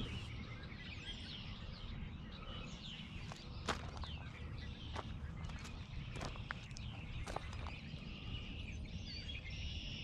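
Footsteps on gravel, a scattered handful of crunching steps, over a low steady wind rumble on the microphone, with birds chirping in the background.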